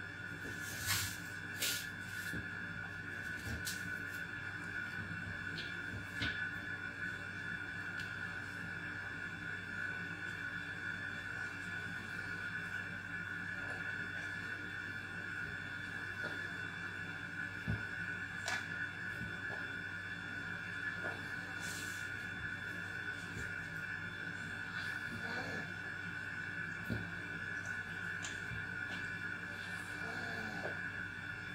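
A steady hum made of several held pitches, with a few faint soft taps and clicks as tomato slices are laid out on paper towels and the plastic bowl is handled.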